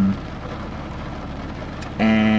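Steady, even hiss of background noise inside a car cabin, with one faint click near the end.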